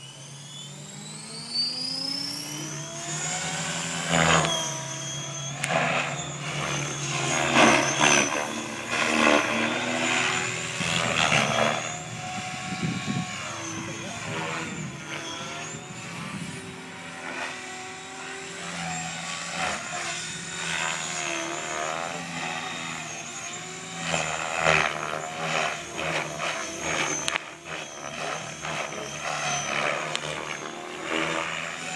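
Blade 550X electric RC helicopter spooling up, its whine rising over the first few seconds, then flying: a steady high motor whine with rotor-blade noise that swells and fades as it manoeuvres.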